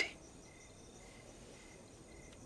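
Faint insect chirping in the background: a short, high chirp repeating a few times a second, over a thin steady high tone.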